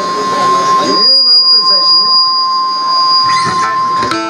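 Voices over a loudspeaker sound system, with a steady high whistle held throughout and a second, shriller tone that comes in about a second in and stops shortly before the end.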